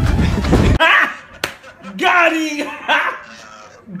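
Outdoor noise and music cut off abruptly less than a second in. Then comes a man's loud voice, exclaiming and laughing in short falling bursts, with one sharp slap about a second and a half in.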